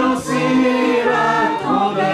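A group of people singing a French song together in chorus, sung phrases running on with a brief breath a quarter second in.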